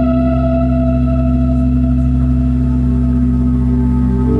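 Live ambient music: a sustained keyboard chord held steady over a low drone, with no singing.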